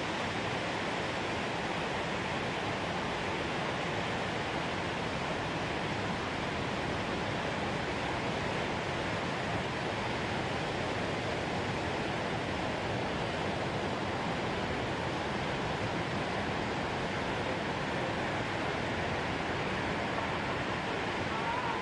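Steady, even rush of ocean surf, with no single wave crash standing out.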